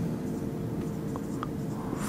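Marker pen writing on a whiteboard, with a couple of faint short squeaks from the strokes over a steady low room hum.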